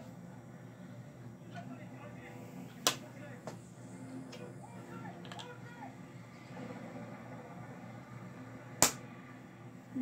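LEGO plastic pieces clicking as they are handled and set down on a tabletop: a sharp click about three seconds in, a lighter one just after, and the loudest one near the end, over a steady low background hum.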